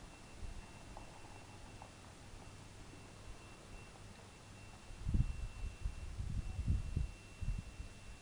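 Quiet outdoor background hiss with a thin, steady high whine that stops about six seconds in; from about five seconds in, irregular low rumbling thumps of buffeting on a handheld camera's microphone as it is carried along.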